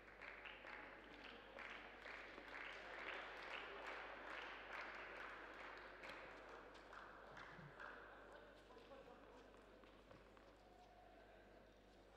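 Spectators clapping with a steady beat of about three claps a second, heard faintly and echoing in a sports hall, dying away after about seven seconds.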